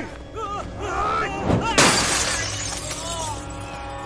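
Fight-scene sound effects over background music: men's grunts and shouts, then, about two seconds in, a sudden loud crash with a shattering tail that fades over about a second.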